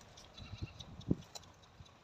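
Camels browsing a tree: faint rustling and a few soft low thumps, the loudest about a second in.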